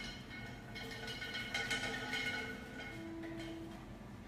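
Background music with held, sustained notes in a pause of the talk, with a little faint handling noise.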